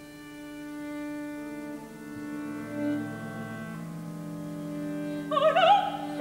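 Orchestral accompaniment from an opera, holding soft sustained chords that shift slowly. Near the end a woman's operatic voice enters, loud and with wide vibrato.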